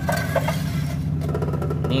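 A steady low background rumble runs throughout. A few light clicks come about a quarter second in as a hand works the table-locking clamp on the column of a bench drill.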